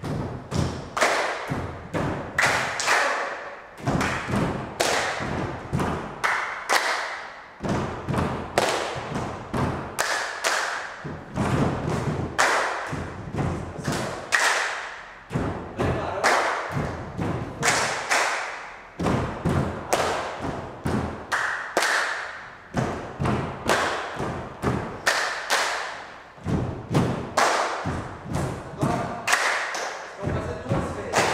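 Group body percussion: many people stomping on a wooden floor and clapping together in a rhythmic pattern that repeats about every two seconds.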